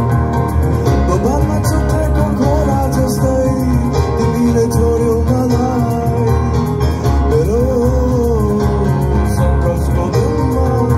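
Live band performing a traditional swang: a singer's voice over acoustic guitars and keyboard. Sung phrases come in about a second in and again near seven seconds, over a steady, full accompaniment.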